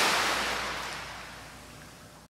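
Editing transition sound effect: a loud whoosh of hiss-like noise that fades steadily away.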